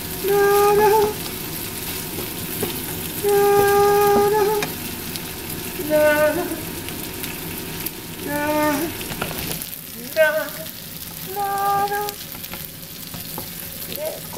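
A patty sizzling steadily as it fries in oil in a nonstick frying pan. Over it, a voice sings six short held notes, about one every two seconds.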